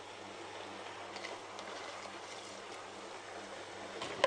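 Tabletop wet grinder running steadily, its motor humming low as the stone rollers turn soaked urad dal, while a little water is poured into the drum to loosen the batter. There are a few faint ticks in the middle.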